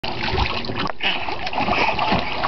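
Water splashing and sloshing in a small inflatable paddling pool as a toddler slaps and churns it with her hands, in quick irregular splashes.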